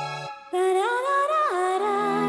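Worship song: a held chord ends, and about half a second in a solo voice enters singing a wordless, hummed melody that glides up and down, with a low sustained note joining near the end.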